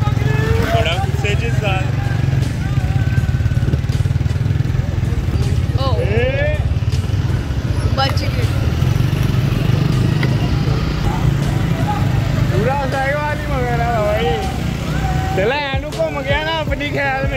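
Motorcycle engines running steadily at low speed, with men shouting and calling out at intervals, most often near the end.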